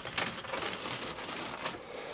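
Cloth bedding rustling as the sheet is pulled over the wooden slatted bed base, with a few faint light knocks as the bed is lowered back down.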